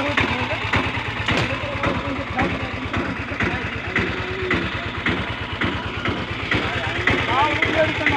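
Auto-rickshaw engine idling with a steady, even beat, with voices talking over it.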